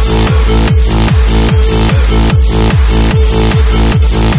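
Hard dance track at full tempo: a heavy kick drum hits about three times a second, each hit falling in pitch, under a held synth note and a dense high layer.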